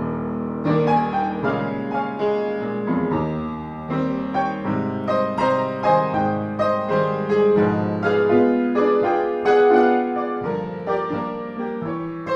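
Solo jazz piano: a left-hand swing bass with chords and melody over it, notes struck at an even swinging pulse.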